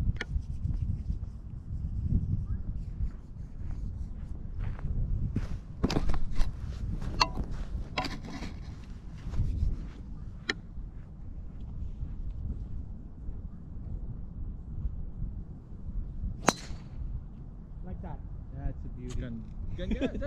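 Wind rumbling on the microphone, with scattered light clicks and knocks in the first half. About sixteen and a half seconds in comes one sharp crack, the loudest sound: a golf driver striking a teed ball on a tee shot.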